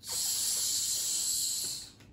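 A child making one long 'shhh' hiss with her mouth, imitating running water from the faucet of a dry toy sink; it starts abruptly and fades out near the end.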